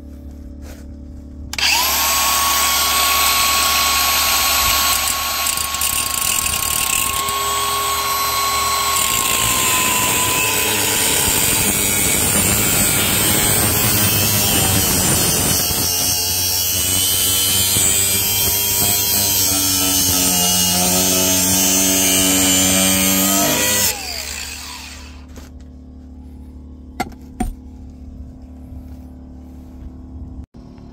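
Angle grinder with a thin cutoff wheel cutting stainless steel tubing. It starts about a second and a half in with a high whine and runs loud under load for about twenty-two seconds, then is switched off and spins down. Two sharp clicks follow near the end.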